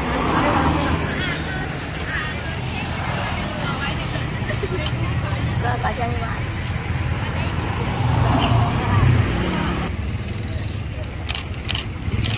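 Road traffic passing close by: a van goes by at the start and a motorbike soon after, over a steady low road rumble. Another vehicle swells past about eight to nine seconds in.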